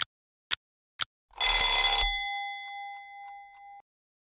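Countdown timer sound effect: ticks half a second apart, then a bell rings at time-up, about 1.3 s in, with a clattering first second and a tone that dies away over the next two seconds.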